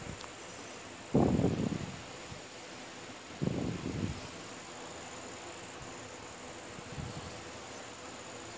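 Scissors snipping through blouse fabric laid on a table: two long cuts, one about a second in and the next about two seconds later.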